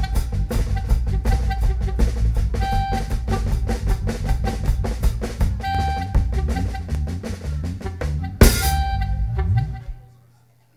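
Live reggae drum kit and bass guitar playing a steady groove, with a short high note recurring about every three seconds. A loud cymbal crash comes about eight and a half seconds in, and the music dies away at the very end.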